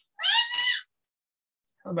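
A single short, high-pitched cry, under a second long, rising slightly in pitch.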